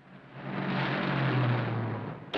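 A car driving past. Its sound swells up and fades away, and the engine note drops slightly as it goes by.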